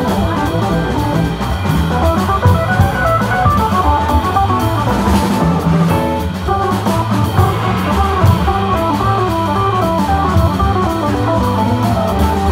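Live jazz organ trio playing swing: a hollow-body electric guitar runs quick single-note lines over organ and a drum kit.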